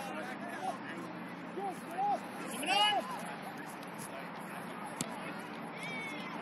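Shouts and calls from young soccer players and spectators across an open field over a steady outdoor hiss, the loudest a high-pitched shout near the middle. A single sharp knock about five seconds in.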